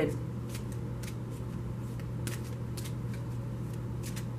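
Tarot cards being shuffled by hand: scattered light card clicks and flicks at irregular spacing, over a steady low hum.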